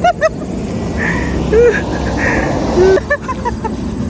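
A woman sobbing with emotion, with short, broken cries and gasps, over a steady low rumble.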